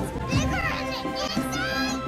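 Several children's voices crying out in amazement, their pitches sliding up and down, over sustained background music.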